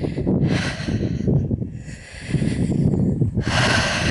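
Wind buffeting and rumbling on the microphone, with two breathy hisses from the person filming: one about half a second in, one near the end.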